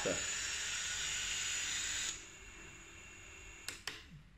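Brushless motors of a prop-less FPV quadcopter spinning, a steady high whine and hiss that cuts off abruptly about two seconds in. With airmode on and a little throttle, the flight controller sees no lift and keeps driving the motors faster, which is normal on the bench. A few sharp clicks follow near the end.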